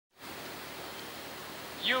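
Steady background hiss with no distinct events, then a man's voice begins near the end.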